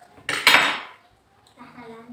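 A loud clatter of metal tableware, the stainless steel bowls and cutlery on the table, about half a second in, dying away over roughly half a second.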